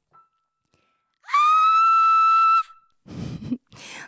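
A woman's voice sings one very high, shrill note, sliding up into it and holding it steady for about a second and a half, showing the top of her vocal range. Faint breathy sounds follow near the end.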